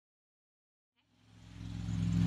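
Silence for about a second, then a steady low mechanical hum with some hiss fades in.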